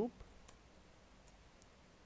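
Computer keyboard typing: a few faint, separate keystrokes over quiet room tone.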